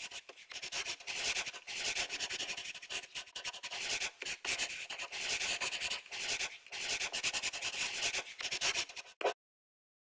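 Handwriting sound effect: scratchy strokes of writing on a surface, coming in quick runs with short pauses between letters, then cutting off suddenly shortly before the end.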